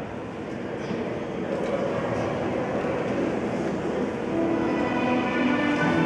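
Steady rumbling hall noise of the ice rink, then orchestral music for the skater's program starts over the rink's speakers about four seconds in, with long held notes and growing louder.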